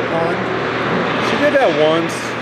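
Voices and steady background noise across an indoor ice rink during hockey practice, with one voice calling out, its pitch falling, about one and a half seconds in.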